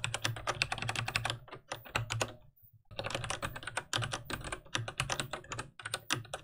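Fast typing on a computer keyboard, a rapid run of keystroke clicks with a pause of about half a second near the middle.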